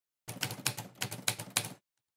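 Typewriter key strikes used as an intro sound effect: a rapid run of clacks lasting about a second and a half, then it stops.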